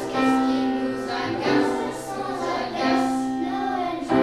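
Children's choir singing, holding long notes that change about every second and a half.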